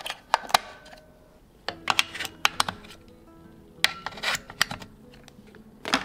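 Clusters of short plastic clicks and taps from handling a battery charger loaded with LADDA rechargeable AA batteries and its white power cable, over soft background music.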